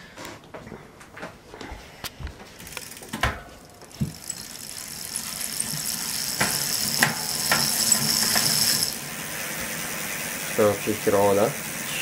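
Bicycle wheel spun by hand: a few knocks as it is pushed, then a whir with fast ticking from the hub that builds over several seconds and drops back about three quarters of the way through.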